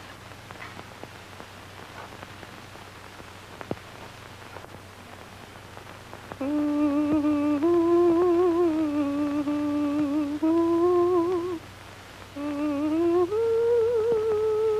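A woman humming a slow lullaby, held notes with a wavering vibrato, starting about six seconds in after faint hiss and crackle; she pauses briefly near the end, then the tune steps up in pitch.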